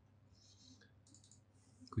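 Faint clicking at a computer, in a few short patches, as a trade amount is typed in. A man's voice starts right at the end.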